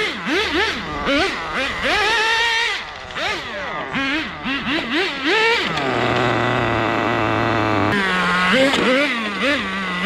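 Small nitro glow-fuel engine of a radio-controlled drift car revving in quick repeated throttle blips, about two a second. Near the middle it holds a steady high-pitched run for about two seconds, then goes back to rapid blipping.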